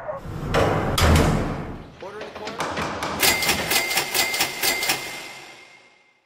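Sound effects in a radio ad: a heavy thump about a second in, like a car door shutting. From about three seconds a rapid run of clicks plays over a steady high tone, fading out near the end.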